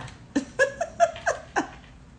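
A woman laughing in about six short, quick bursts.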